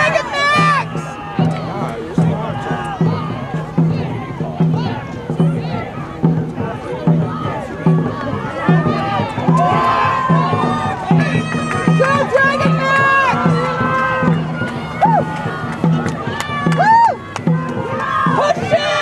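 Dragon boat drum beating a steady stroke rhythm, about two low thumps a second, under many people shouting and cheering.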